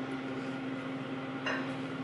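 Steady low hum of kitchen room tone with a faint mechanical drone, and a brief soft rustle about a second and a half in as a banana is peeled by hand.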